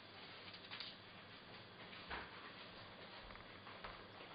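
Near silence with a few faint rustles and light taps, the clearest about two seconds in, as a sheet of varnished aluminium foil is handled and carried away.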